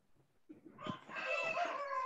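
An animal call: one long pitched cry that starts about a second in and falls in pitch near the end.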